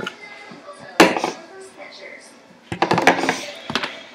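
Plastic sippy cups and bottles being moved and set down on a tabletop: one sharp clack about a second in, then a quick cluster of clatters near the end.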